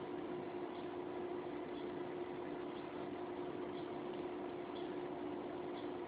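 Room tone: a steady low hiss with a faint constant hum, and no distinct sounds.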